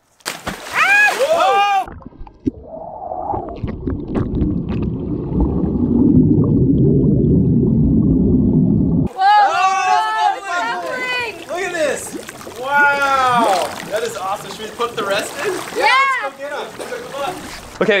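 Dry ice fizzing and bubbling in a swimming pool, heard from under the water as a muffled low rumble for about seven seconds, cutting in and out sharply. Excited shouting comes before and after it.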